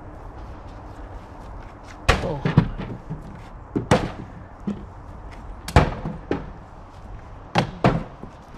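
Thrown balls striking a homemade wooden throwing-game booth and its pin targets: about four loud sharp knocks roughly two seconds apart, with smaller knocks and clatter between.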